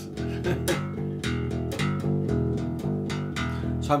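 Electric bass guitar, a violin-shaped hollow-body, plucked in an even, steady rhythm, repeating a simple riff of two E notes followed by two G notes.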